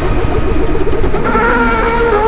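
Cinematic trailer sound design: a loud low rumble under a wavering, buzzing drone of several tones, which swells about a second in.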